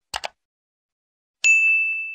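Subscribe-button sound effect: two quick mouse clicks, then about a second and a half in, a bright bell-like ding that rings on and fades away.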